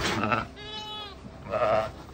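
North Country Cheviot sheep, a ewe with her newborn lamb, bleating: three short calls about half a second each, the middle one a clean, even note.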